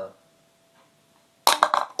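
A ping-pong ball dropped and bouncing, a quick series of sharp light clicks about a second and a half in, ending in a clear plastic cup.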